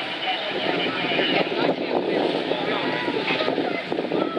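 Fire truck engine running steadily, with several people talking over it.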